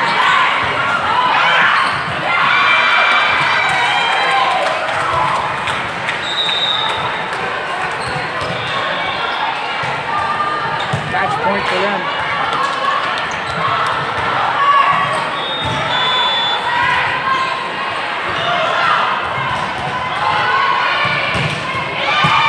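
Indoor volleyball play: the ball being struck and bouncing on the court in a large, echoing hall, over the calls and chatter of players and spectators.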